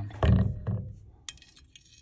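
A magnet knocking and rattling against a glass dish of glitter liquid: a loud clatter just after the start, a smaller one soon after, then a few faint clicks.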